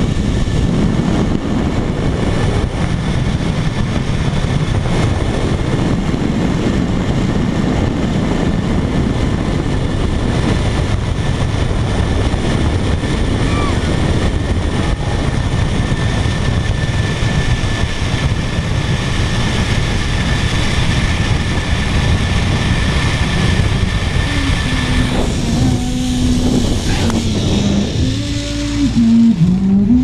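Zipline trolley rolling fast along the steel cable, with wind rushing hard on the microphone and a faint steady high whine from the pulleys. About 25 seconds in the rushing dies away as the trolley slows into the landing platform.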